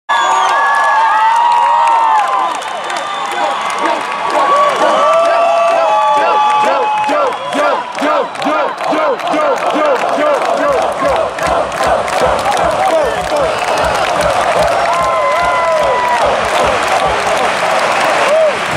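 Large concert crowd cheering and chanting, many voices overlapping with pitches rising and falling. From about ten seconds in, a steady rhythmic low thumping joins the voices.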